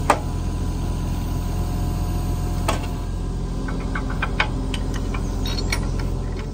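Mini excavator engine idling steadily, with sharp metal clicks and clinks as the compactor's quick-connect pin and hydraulic hose couplings are fitted by hand. The loudest click comes just after the start, and a quicker run of small clicks follows in the second half.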